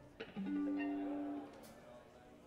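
Amplified electric guitar struck once, a chord ringing for about a second before it is cut off.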